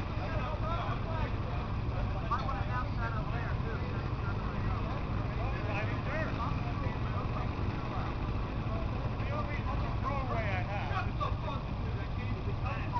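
Indistinct voices of people talking, too faint to make out words, over a steady low rumble.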